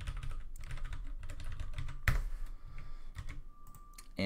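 Typing on a computer keyboard: a run of quick keystrokes, with one louder key hit about halfway through.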